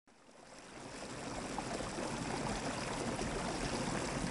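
Water running steadily, a continuous splashing hiss that fades in from silence over the first second or two.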